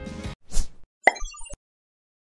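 Editing sound effects as the music cuts off: a short pop about half a second in, then a brief sparkling chime of a few high notes about a second in.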